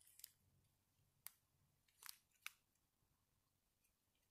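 Near silence broken by a few faint, brief crinkles and ticks from a small clear plastic bag of round resin diamond-painting drills being handled in the fingers.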